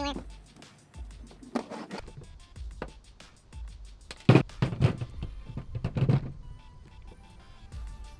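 Background music with a steady beat, and a single sharp, loud thump about four seconds in.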